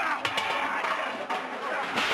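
A noisy clatter and splatter of food and kitchenware being thrown about, with a man's shouting partly over it.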